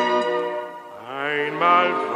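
Orchestral music with sustained notes. A held chord fades, then about halfway through new notes swell in with a slight upward slide.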